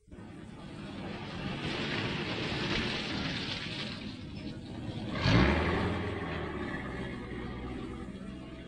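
A motor car running, a steady low engine hum with road noise, swelling louder for a moment about five seconds in.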